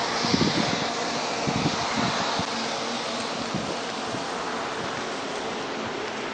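Steady rushing vehicle noise on a wet road as a stopped SUV pulls away, with a few soft knocks in the first two seconds.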